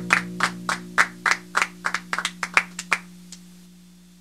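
Hand claps, about four a second, dying out after about three seconds, while the last strummed chord of an acoustic guitar rings on and fades.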